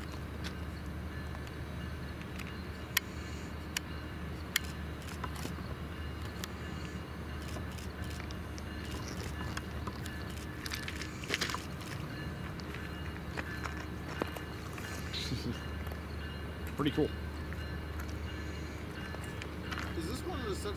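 Diesel locomotive of a Metrolink commuter train rumbling steadily as it creeps at very low speed through a train wash. A few sharp clicks come about three to five seconds in.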